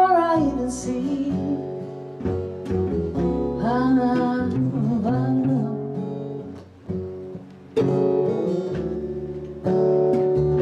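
Live song: a woman singing over acoustic guitar and upright double bass, her voice holding and bending long notes in the first half. Near the end the guitar and bass carry on without the voice.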